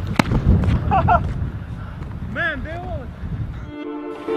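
Shaken soda cans thrown onto asphalt: a few sharp knocks over outdoor wind noise, with short excited shouts. String music comes in near the end.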